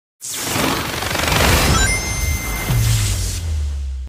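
Cinematic film-trailer sound effects: a loud rushing whoosh with a brief rising tone about two seconds in. Under the whoosh a low bass rumble comes in and holds, then cuts off at the end.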